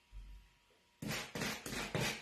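Stencil brush dabbing paint through a raised stencil onto a board, quick scratchy strokes about four or five a second, starting about a second in after a brief low thud.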